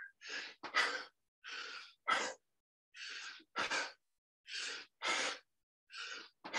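A person breathing hard and fast, out of breath from a set of jump squats. Each breath is a softer in-breath followed by a louder out-breath, about one breath every second and a half.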